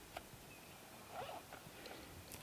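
Near silence, with one faint, brief animal call about a second in.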